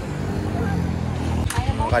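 Small single-cylinder motorcycle engine of a tricycle running close by, its steady hum growing louder, then turning into a fast, even putter near the end. A sharp click sounds about one and a half seconds in.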